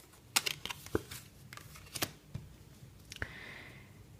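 Tarot cards being drawn from the deck, flipped and laid down on a wooden table: a few light taps and flicks, with a soft sliding rustle near the end.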